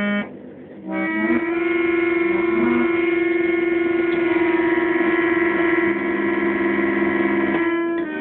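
Small red electric keyboard organ played by a toddler: a brief note at the start, then from about a second in several keys held down at once, a sustained chord of notes that shifts now and then and changes again near the end.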